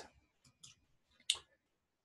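A few short clicks, the loudest about a second and a half in: a computer mouse being clicked to open a web page.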